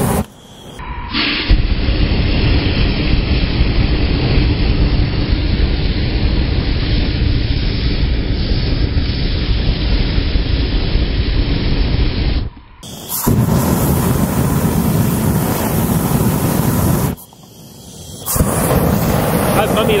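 Aerosol-can flamethrower (ignited Raid insect spray) blasting flame in a loud, steady rushing whoosh. It breaks off briefly twice, after about 12 seconds and again after about 17 seconds.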